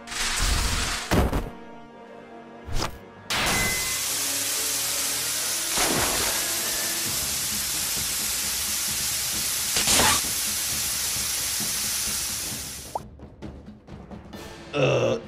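Cinematic sound effects of an energy blast: a few sharp hits and whooshes in the first seconds, then a steady rushing blast noise for about nine seconds that fades away near the end, over background music.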